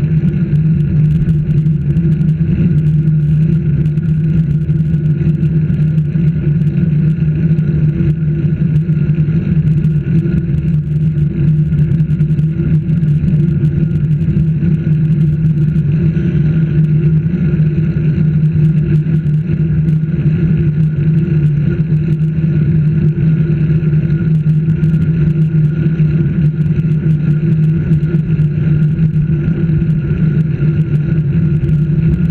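Steady travel noise from a camera moving along a road: a constant low drone with wind and road rumble that does not change in pitch or loudness.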